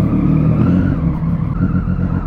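Motorcycle engine running steadily at low revs as the bike rolls slowly along under the rider.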